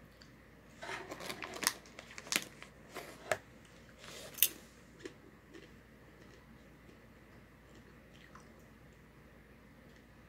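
Eating popcorn from a small resealable plastic bag: a run of crinkles and crunches from the bag and the chewing, starting about a second in and ending around four and a half seconds in, the sharpest crack near the end of the run.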